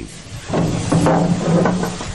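A large torch-cut section of ship's steel breaking loose and toppling to the ground: a grinding metallic groan with knocks, starting about half a second in and dying away near the end.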